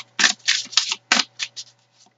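A tarot deck being shuffled by hand: a brisk run of about half a dozen short papery strokes with brief gaps, the loudest about a second in.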